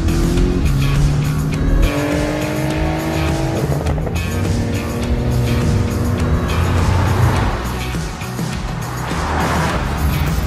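Porsche 718 turbocharged flat-four engine revving, its pitch climbing for about two seconds then dropping back and running on, mixed with background music with a steady beat. Near the end a rising rush of tyre and road noise as the car passes.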